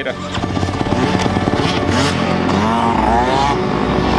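Yamaha motocross bike's engine running and revving, its pitch rising and then falling about three seconds in.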